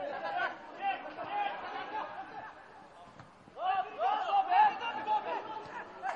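Several voices shouting on a football pitch, overlapping, in two spells: at the start and again from about three and a half seconds in.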